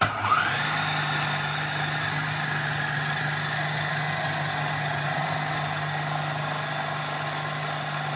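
Electric food processor switched on: a short rising whine as the motor spins up, then a steady hum as the blade churns crushed Oreo crumbs and melted butter.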